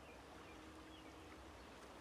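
Near silence: faint outdoor background with a faint steady hum.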